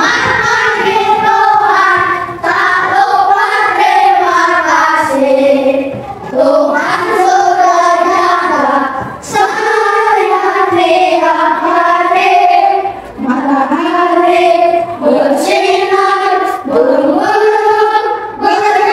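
A class of young schoolchildren singing a song together, in sung phrases of a few seconds with brief breaks between them.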